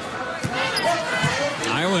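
A basketball being dribbled on a hardwood court, several sharp bounces over the steady noise of an arena crowd.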